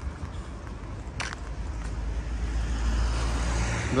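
Road traffic noise: a low rumble and hiss that grow steadily louder, as of a vehicle approaching on the road, with a single short click a little after a second in.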